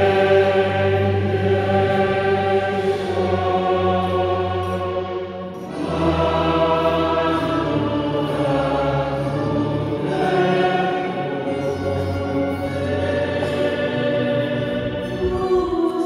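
Choir singing in long, held phrases, with a brief dip between phrases about five and a half seconds in.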